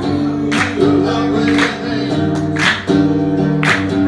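Acoustic guitar strummed in a slow, steady rhythm, about one strum a second, under held sung notes.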